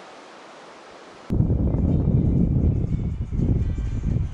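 Wind buffeting the microphone, a loud irregular rumble that starts suddenly about a second in, over the hiss of surf on the shore.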